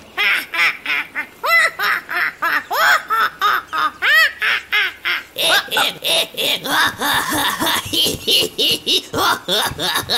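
Cartoon parrot laughing: a long, unbroken run of quick, squawky cackles, several a second.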